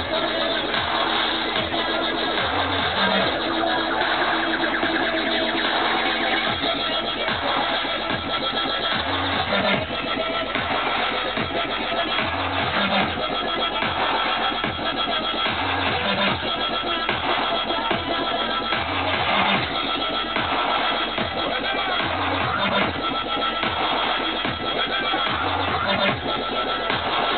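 Dubstep played loud over a club sound system, heard from the crowd and muffled, with no top end: a steady beat with deep bass notes recurring about every three seconds.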